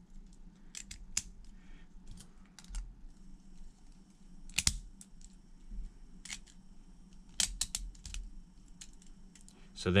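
Beyblade Burst top's plastic and metal parts clicking together as they are fitted by hand: scattered clicks, the loudest about halfway through, and a quick run of several clicks near the end.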